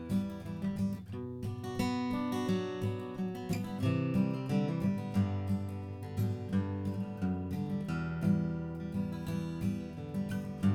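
A freshly strung Martin 000-18 mahogany-body acoustic guitar played solo: a continuous run of chords and single notes.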